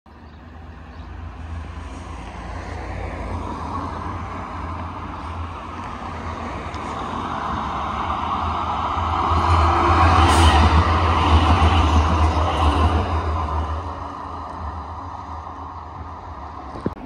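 Sheffield Supertram tram running along street track, its sound swelling as it approaches, loudest as it passes close by at about ten to thirteen seconds in, then fading as it moves away. Low wind rumble on the microphone underneath.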